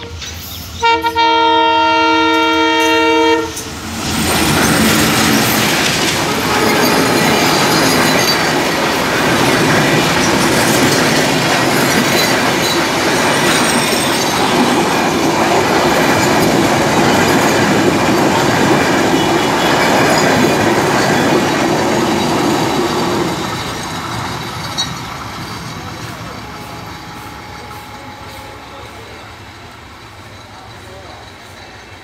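Diesel locomotive horn sounding one blast of about two and a half seconds, then a train of PT INKA-built passenger coaches passing at high speed: a loud steady rush of wheels on the rails for nearly twenty seconds that fades away near the end.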